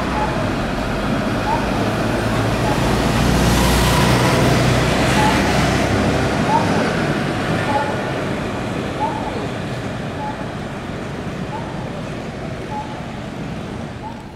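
City bus passing close in street traffic: its engine rumble swells over the first few seconds, peaks around four seconds in, then fades into general road traffic noise.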